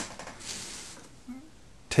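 Faint brushing and rustling of a hand touching and picking up a clay sculpture that rests on a sheet of paper, strongest about half a second in.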